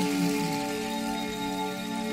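Slow new-age background music of long held, steady tones, with a fine even hiss above it.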